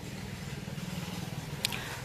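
A small engine running steadily with a low hum. There is a single sharp click late on.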